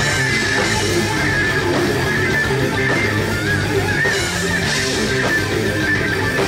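Heavy metal band playing live through a stage PA: distorted electric guitars over bass and drums, with a high guitar line that bends and wavers in pitch.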